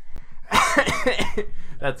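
A person's coughing burst of laughter, starting about half a second in and lasting about a second and a half.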